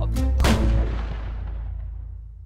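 A gunshot sound effect: one sharp bang about half a second in over a deep boom, dying away slowly over the next second and a half.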